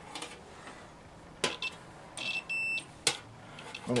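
Continuity tester giving one short, steady, high beep of about half a second, a little over two seconds in. It signals a good earth connection between the heater's ground terminal and the plug. A sharp click comes shortly after the beep.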